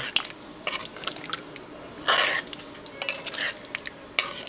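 Metal spoon stirring eddo curry in a pot: scattered light clinks and scrapes of the spoon against the pot through the gravy, with a brief swish about two seconds in.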